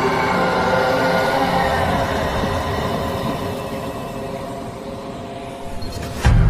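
Cinematic sound design for an animated logo intro: a dense sustained drone of many layered tones that swells in the first second and then slowly fades away.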